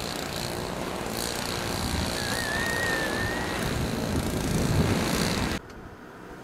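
A car driving slowly along a slushy, plowed street: steady engine and tyre noise, with a brief wavering high whistle in the middle. About 5.6 s in it cuts off suddenly and drops to a much quieter background.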